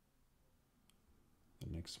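Near silence with one faint, short click about a second in, followed near the end by a man's voice.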